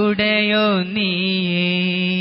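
A solo voice singing an Islamic devotional song in Malayalam on the word "Allah". It slides through a short melodic phrase, then holds one long steady note from about a second in.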